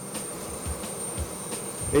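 Homemade diesel-fuelled gas turbine engine built from a lorry turbocharger, running on a jet go-kart under way: a steady rushing noise with a thin, high whine on top.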